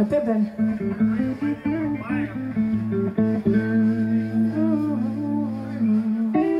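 Live electric blues: an amplified electric guitar playing single notes with bends, over steady sustained bass guitar notes.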